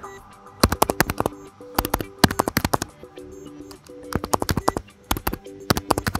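Computer keyboard being typed on in several quick runs of sharp key clicks, entering a password and then confirming it, over faint background music.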